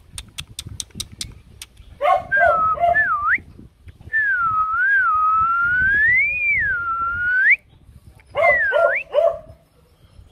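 A person whistling to get a dog's attention: one long wavering whistle that swoops up and down, with shorter whistled calls before and after it. A quick run of about seven sharp clicks comes at the start.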